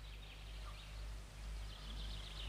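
Faint birdsong, scattered short chirps, over a low steady hum.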